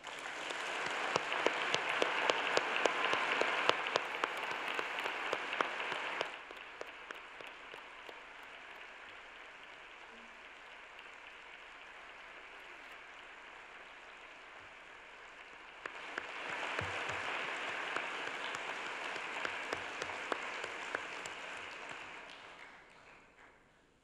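Large audience applauding: loud, dense clapping for about six seconds, dying down to a softer spell, then swelling again about sixteen seconds in and tailing off at the end.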